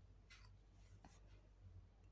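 Near silence: room tone with a faint soft rustle about a third of a second in and a tiny click about a second in.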